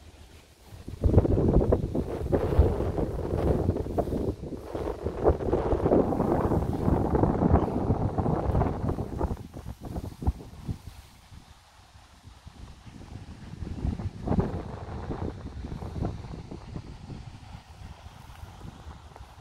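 Wind buffeting the phone's microphone in irregular gusts: heavy rumbling from about a second in until around ten seconds, then dying down and gusting again briefly a few seconds before the end.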